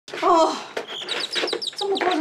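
A rapid run of high, bird-like chirps, about seven a second, starting about a second in and following a brief voice.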